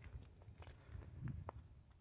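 Faint footsteps of a person walking, with a few soft irregular clicks and a low rumble.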